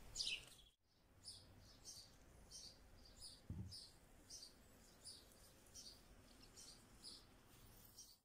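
Faint bird chirping: short high chirps repeated about twice a second over near silence, after a moment of total silence about a second in.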